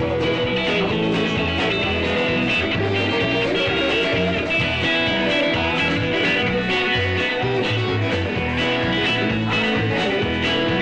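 Live rock and roll band playing an instrumental passage with a steady beat: electric guitars over bass guitar and drums.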